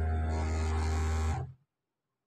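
Industrial overlock sewing machine running a short burst of stitching, a steady hum with a buzzy stitching noise over it, stopping abruptly about a second and a half in.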